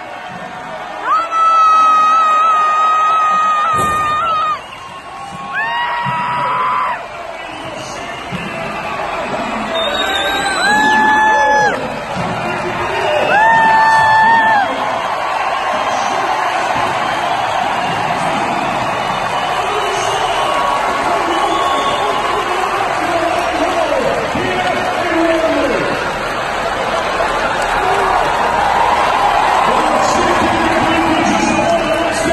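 Arena crowd yelling and cheering for strongmen pressing a safe overhead. In the first half, several long, steady, high-pitched yells ring out over the crowd, and from about halfway a continuous crowd roar takes over.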